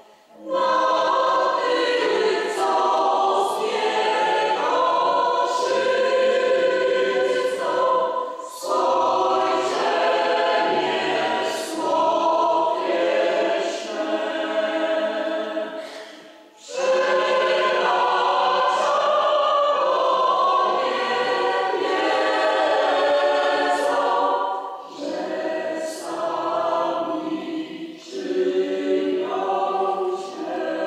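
Parish choir singing a slow sacred song in long sustained phrases, breaking briefly between phrases about eight, sixteen and twenty-five seconds in.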